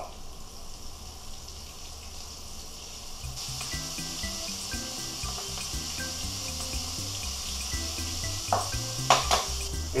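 Coated onion rings frying in a skillet of hot oil: a steady sizzle that grows louder about a third of the way in. A few light clicks come near the end, over quiet background music.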